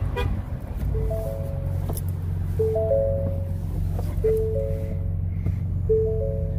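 Ford F-150 Raptor's warning chime: a three-note chime repeating four times, about every second and a half, because the driver's door is open. Under it runs the steady low hum of the truck's 3.5-litre twin-turbo V6 idling.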